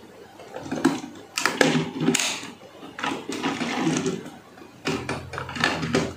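A plastic toy truck and trailer handled on a tabletop: a string of irregular clicks and knocks of plastic as the trailer's rear ramp drops open.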